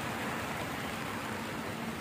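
Steady hiss of a heavy downpour on a flooded street.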